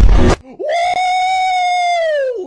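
A man's long, high-pitched scream, held on one pitch from about half a second in and starting to fall near the end. Just before it, a loud noisy sound cuts off abruptly.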